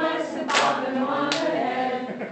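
A group of people singing together, with two short sharp sounds about half a second and a little over a second in.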